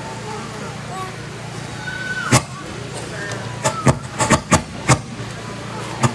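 Faint murmur of voices over a steady low hum, with one sharp knock about two seconds in and a quick run of about six sharp knocks between three and a half and five seconds in.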